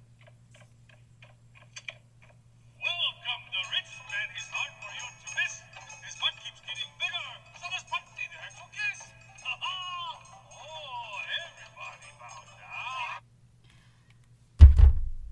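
A man singing a comic, fawning song over music, played from an animated film's soundtrack. It starts about three seconds in, after a run of soft, evenly spaced clicks, and breaks off sharply about a second before the end.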